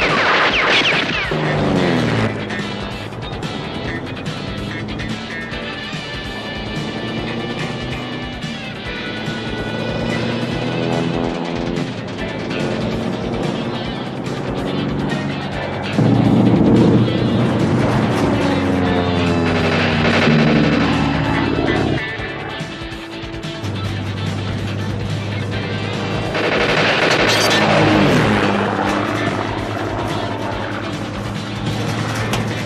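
A music score over heavy engine noise from a Mack road-train truck, with the engine pitch gliding up and down several times. The sound is loudest around the middle of the clip and again near the end.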